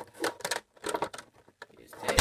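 Clicks and light knocks from a plastic VHS tape case being handled and moved about.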